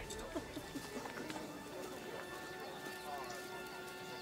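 Low murmur of many people talking at once, with quiet sustained music underneath.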